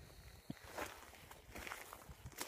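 Faint footsteps on gravel, a few light scattered crunches.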